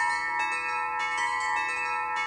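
Metal tube wind chime ringing, its tubes struck several times a second so that the clear tones overlap and ring on.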